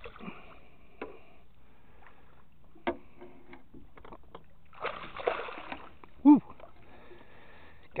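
Water splashing as a hooked northern pike thrashes at the surface beside the boat, with a noisy splash about five seconds in. A sharp click comes before it, and a short, loud sound falling in pitch follows a little after six seconds.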